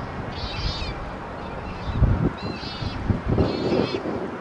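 Wind buffeting the microphone in gusts, with a few short, high chirps over it.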